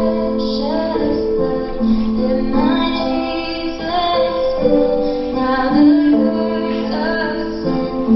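A woman singing a song, with held notes that slide between pitches, over instrumental accompaniment.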